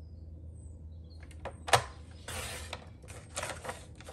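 Stampin' Up sliding paper trimmer cutting a sheet of patterned paper: a few sharp clicks as the paper and cutting head are set, then two short scraping passes of the blade along its rail in the second half.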